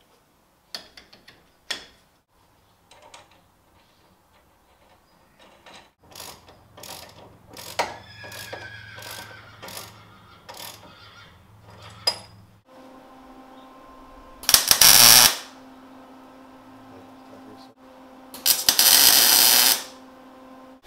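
Metal clanks and taps as a steel drag-link tube is handled and fitted to the steering, with a brief ringing tone from the metal about eight seconds in. From about thirteen seconds a power tool hums steadily, and twice, for about a second each, it cuts loudly into the steel drag link.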